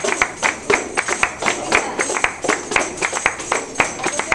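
A small group clapping hands together in a steady quick rhythm, about four claps a second, in the manner of flamenco palmas keeping time for a song.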